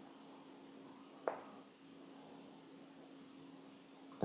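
Near silence: faint room tone with a low steady hum, and one short, light click about a second in from a small part being handled on a tabletop.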